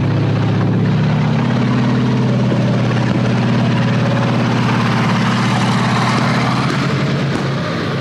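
Tank engines running as the tanks drive past, a steady low drone that eases slightly near the end.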